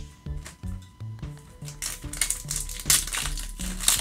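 Foil booster pack wrapper crinkling and crackling as it is handled, starting about two seconds in, over background music with a steady beat of short low notes.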